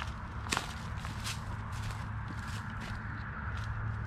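Footsteps walking, short soft steps about two a second, over a steady low hum.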